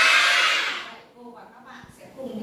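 A class of young children calling out "Có!" (yes) together, many high voices drawn out at once, dying away about a second in.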